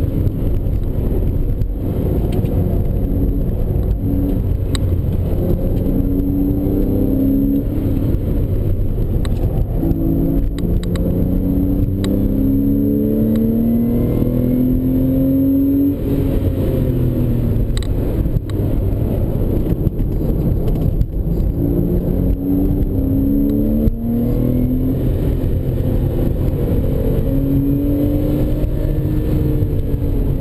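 Porsche 911 Carrera S flat-six engine heard from inside the cabin under hard track driving. Its pitch climbs under acceleration and drops at each gear change or lift, several times over, above a constant rumble of road and tyre noise.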